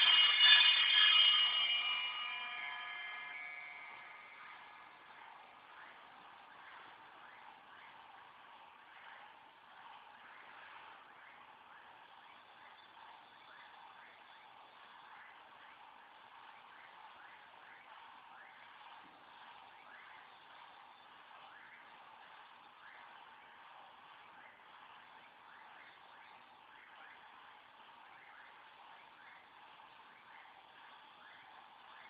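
Music fades out over the first few seconds. It leaves a faint, steady chorus of many short, overlapping calls, as from a night-time chorus of calling animals.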